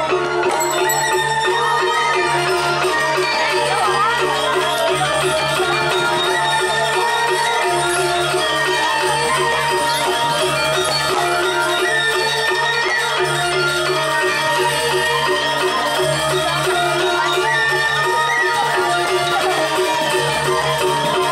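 Balinese gamelan orchestra playing, its bronze metallophones ringing in a steady, even pulse.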